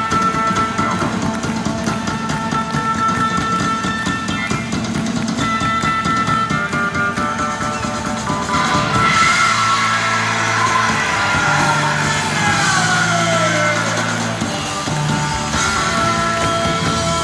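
Live rock music from a full band. For the first half a steady, pulsing synthesizer-like tone repeats, then about eight and a half seconds in the music swells loudly, with a long falling glide over held bass notes.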